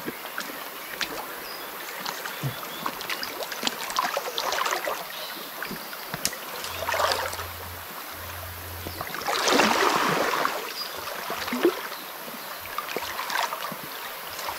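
Creek water sloshing and splashing as people wade and crawl through the shallows, with louder splashes about seven seconds in and again around ten seconds.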